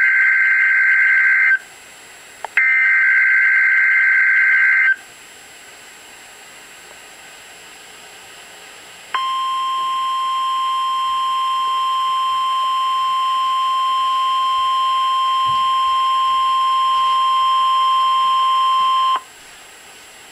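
NOAA Weather Radio Emergency Alert System activation for a severe thunderstorm warning. Two bursts of buzzy SAME header data tones in the first five seconds are followed, after a pause of about four seconds, by the steady 1050 Hz warning alarm tone. The tone holds for about ten seconds and cuts off about a second before the end.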